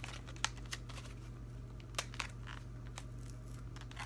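Packaging of a set of gel pens being worked open by hand: crinkling and tearing, with a few sharp clicks and snaps. A steady low hum runs underneath.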